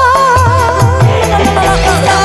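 Live campursari music: a woman singing a wavering, ornamented vocal line over a steady drum beat and electronic keyboard accompaniment.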